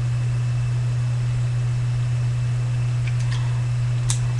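A steady low hum with a faint hiss over it, with a faint light crinkle or two of thin can aluminum being bent by hand about three seconds in.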